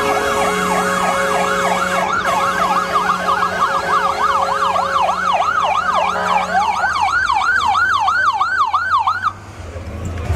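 Police escort sirens on a fast yelp, several overlapping at first and then one alone from about two-thirds in, rising and falling about three times a second, until it cuts off suddenly near the end.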